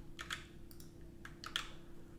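Faint computer keyboard keystrokes: several separate key clicks as code is copied and pasted.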